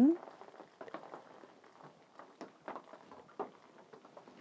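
Boiling water poured in small amounts from a glass kettle into the cells of a seed-starting tray of potting soil: faint trickling with scattered small ticks and splashes.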